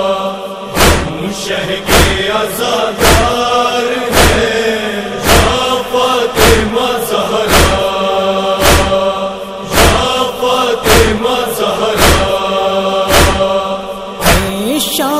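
A chorus of voices holding a wordless chanted drone between nauha verses, kept in time by loud matam (chest-beating) strokes about once a second.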